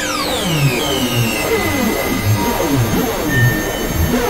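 Experimental synthesizer noise music: a dense, harsh texture full of falling pitches, with a high sweep dropping away right at the start and many short downward glides repeating underneath.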